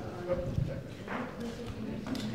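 Indistinct murmur of voices in a large hall, with a few light knocks and clicks while a laptop is handled at a lectern.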